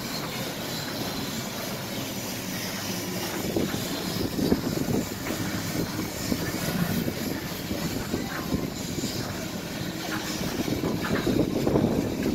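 Wind buffeting the microphone, mixed with handling noise, as the recorder is carried. The irregular crackling rumble grows from a few seconds in and is strongest near the end.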